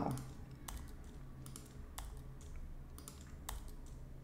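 Computer keyboard shortcuts and mouse clicks: faint, sharp key taps and clicks, roughly two a second, as keys are pressed in quick pairs between clicks.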